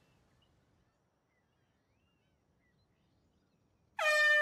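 Near silence: faint quiet ambience with a few faint bird chirps. An air horn blares in at the very end.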